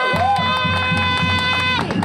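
A steady, high-pitched held tone with overtones, lasting about two seconds and cutting off near the end, with voices over it.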